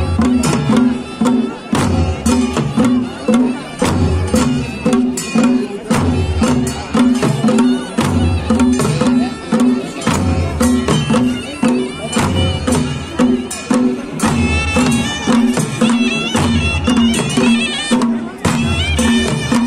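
Traditional Kullu folk band playing live: large brass-shelled drums beating a steady rhythm under a droning, reedy wind instrument, with a wavering high melody that comes forward near the end.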